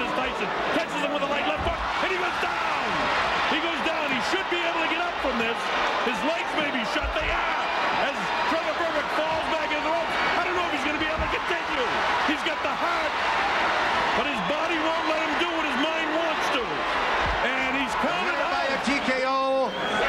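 Arena crowd cheering and shouting at a heavyweight knockout, many voices overlapping without a break, with a few dull thumps.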